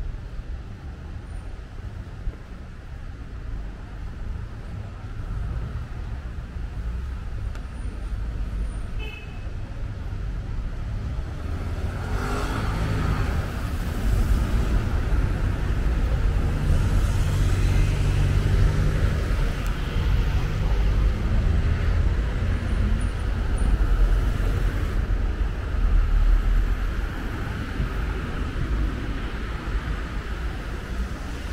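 City road traffic: passing cars, a steady low rumble that swells about twelve seconds in and stays louder.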